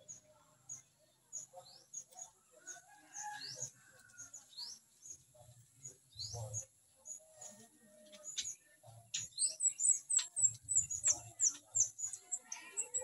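Short, high bird chirps repeating throughout, coming faster and louder in the last few seconds, with soft low thumps as turkeys peck at a hanging bundle of grass.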